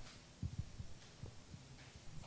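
Quiet auditorium room tone with a low hum and a few short, faint low thumps, the first about half a second in.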